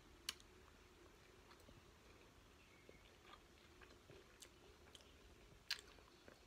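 Faint chewing of a mouthful of pan-fried shredded-potato hash browns, with a sharp click about a third of a second in, a few soft ticks through the chewing and another click near the end.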